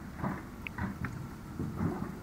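Outdoor wind buffeting the microphone as a low, uneven rumble that surges several times, loudest near the end. A few very short high-pitched notes come through about two-thirds of a second and a second in.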